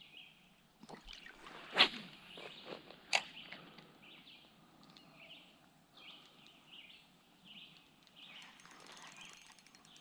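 Quiet riverside ambience with small birds calling faintly over and over, broken by two sharp clicks about a second and a half apart, about two and three seconds in.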